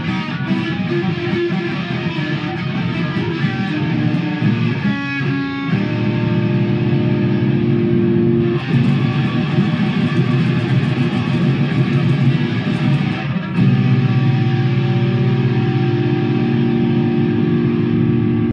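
Electric guitar played loud, mostly long held chords and notes that change every few seconds, with a short flurry of fast repeated notes about five seconds in.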